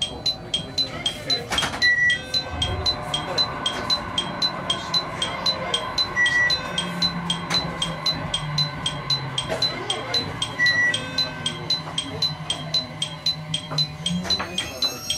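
An electronic chime striking evenly, about three times a second, with a short high beep every four seconds or so. A low steady hum joins about seven seconds in.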